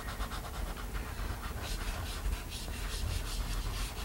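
Chalk pastel scratching across paper in quick, repeated strokes as a drawing is coloured in.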